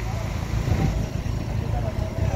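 Low, steady rumble of vehicle engines in street traffic, with a white intercity coach bus close by.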